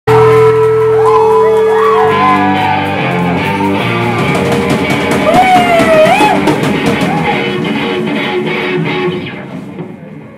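A rock band playing live on electric guitars, bass guitar and drum kit. The music dies down shortly before the end.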